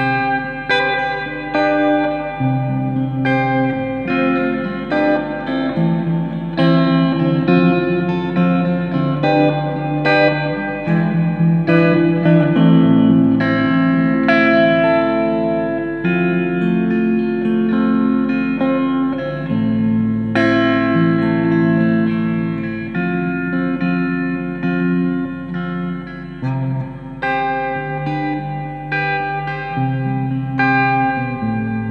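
Electric guitar picking slow arpeggiated chords through an Electro-Harmonix Oceans 11 reverb pedal on its hall setting, each note ringing into a long wash of reverb.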